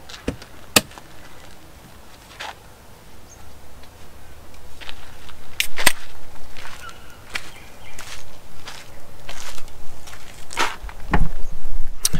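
Scattered clicks and knocks of gear being handled at an open car tailgate, then footsteps on a dirt track coming closer. The knocks and steps grow more frequent and louder in the second half.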